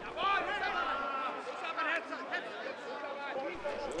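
Several voices shouting and calling out across an outdoor football pitch during play, overlapping one another and quieter than close speech.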